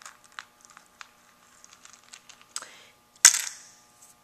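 Dried beans rattling and clicking in a plastic tub as a hand with tweezers digs through them for buttons. A series of small light clicks, then one much louder sharp clack a little after three seconds in.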